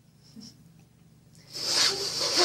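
Near quiet, then about a second and a half in, a woman crying with emotion draws a sharp, breathy sobbing breath.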